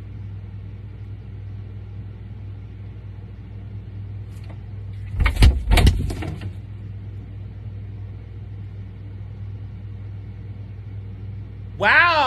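Steady low hum of a refrigerator, recorded from inside the fridge, with a short louder burst of knocking or handling noise about five seconds in.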